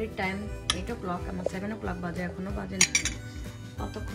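A metal spoon clinking and scraping against ceramic bowls: one sharp clink about a second in and a louder cluster of clinks near three seconds, over background music.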